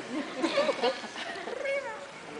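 High-pitched voices calling out and chattering, with short cries that slide up and down in pitch and one falling cry near the end.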